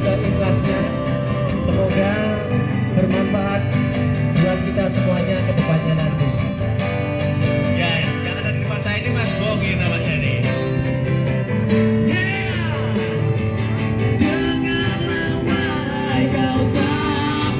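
A song played on acoustic guitar, with a singing voice carrying the melody at times.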